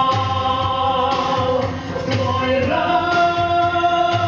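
A man and a woman singing a duet through handheld microphones over instrumental accompaniment, holding long sustained notes and moving to higher notes a little before the end, with a low beat about once a second.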